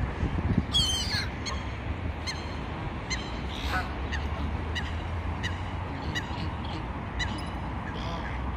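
Waterbirds calling on a lake: a harsh squawk about a second in, then a run of short repeated calls, over a steady low rumble.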